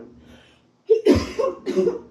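A woman coughing several times, starting about a second in, with incense smoke caught in her throat.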